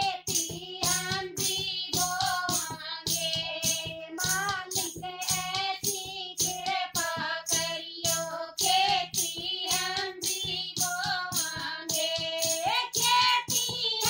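Women singing a Haryanvi devotional bhajan in unison. They are accompanied by an even clacking rhythm, about four beats a second, from plastic hand clappers and a hand-beaten drum.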